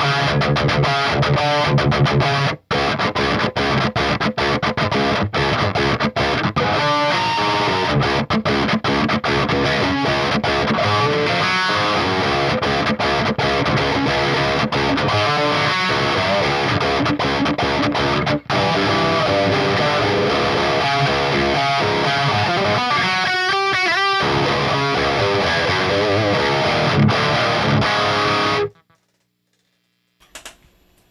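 Electric guitar played through a Finch Electronics Scream tube-screamer-style overdrive pedal pushing an amp hard: tight, heavily distorted djent-style riffing. It breaks off briefly a few seconds in and stops abruptly near the end.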